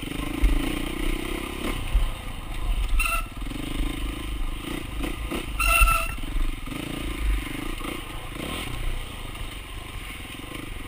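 Dirt bike engine on the throttle, revving up and easing off again and again as the bike is ridden over rough trail, with sharp knocks and clatter from the bike over the bumps.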